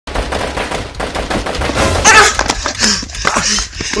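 Rapid bursts of gunfire, many shots a second for the first two seconds, followed by shouted voices.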